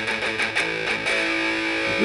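Electric guitar picked in quick palm-muted strokes, then a power chord (a fifth on the sixth string at the fifth fret) left ringing from about a second in.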